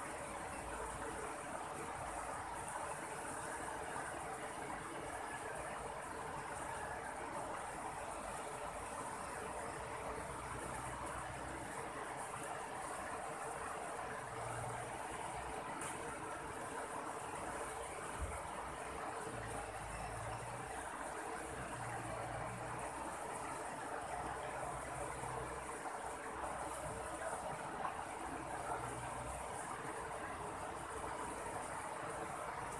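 Shallow river water rushing steadily over rocks and small rapids, with a steady high-pitched drone above it and occasional low rumbles in the second half.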